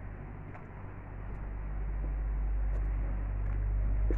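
Diesel engine of a Hidromek tracked excavator running with a steady low hum, growing louder from about a second in.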